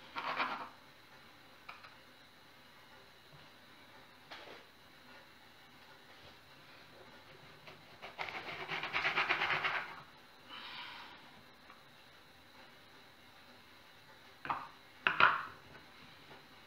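Baking paper rustling as a sheet is pulled from the roll and torn off, about eight seconds in for some two seconds, with a softer rustle after it. A few sharp scrapes of paper near the end.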